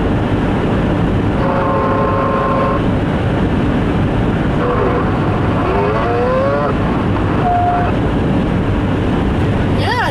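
Steady road and tyre noise heard from inside a car cruising on a wet highway. A voice sounds faintly a few times over it: a held note about two seconds in, then short notes and rising glides around the middle.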